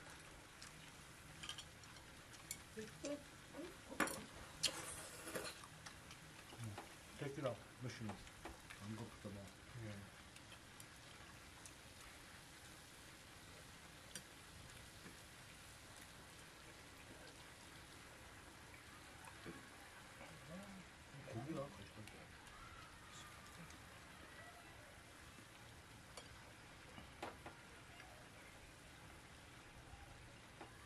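Faint, steady sizzle of bulgogi cooking in a tabletop grill pan, with metal tongs and chopsticks clicking against the pan and plates, the clicks loudest a few seconds in.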